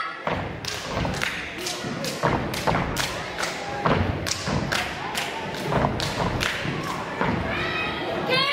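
A step team stepping in unison on a stage: stomps and claps in a fast, even rhythm of about three hits a second.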